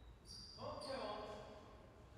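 A short call in a man's voice about half a second in, echoing in the large indoor court, starting with a low thud like a ball bouncing on the floor.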